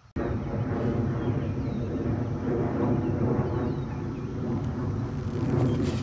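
A steady low drone like a distant engine running, over outdoor background noise.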